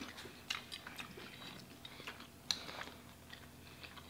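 Faint, close-miked eating sounds: chewing with small crunches and mouth clicks, and crackles of crisp fried food being pulled apart by hand. The sharpest come about half a second and two and a half seconds in.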